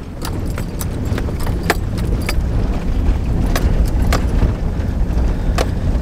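A vehicle driving, a steady low rumble with scattered sharp clicks and rattles over it.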